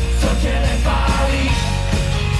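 A pop rock band playing live through a PA: electric guitars, bass guitar, drum kit and keyboard playing a song together at full volume.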